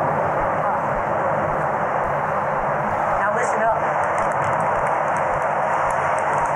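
A truck approaching through a road tunnel: a steady, loud rush of engine and tyre noise.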